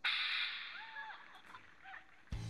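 Sound of a video playing on a smartphone: a sudden burst of noise that fades over about half a second, then a few short tones that rise and fall in pitch.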